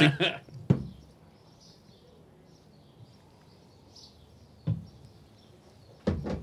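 Quiet room with faint, scattered bird chirps from outside, broken by two short thumps, one just under a second in and one near five seconds.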